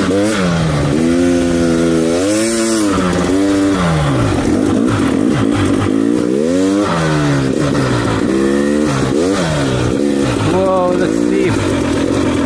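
KTM 300 XC TPI two-stroke dirt bike engine revving up and dropping back again and again while riding over sand. The pitch swells and falls about every one to two seconds.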